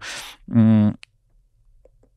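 A man's voice in the first second: a breathy sound, then a short drawn-out syllable as he pauses mid-sentence. A single short click follows just after, then a pause with almost nothing audible.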